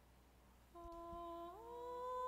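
Faint background music: a single sustained tone comes in under a second in, and about halfway a second tone slides up above it and holds, making a quiet two-note chord.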